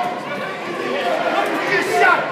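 Indistinct chatter of spectators talking over one another, echoing in a gymnasium.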